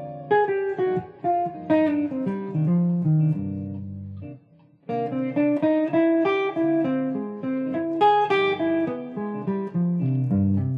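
Semi-hollow electric guitar playing quick single-note jazz lines over a minor ii–V–i (D minor 7 flat 5, G7, C minor), with lower held notes beneath. The playing stops for about half a second near the middle, then carries on.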